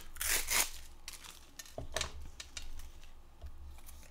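Hands handling a plastic-wrapped jar of texture paste: a short crinkling rustle at the start, then a few small sharp clicks and taps about two seconds in.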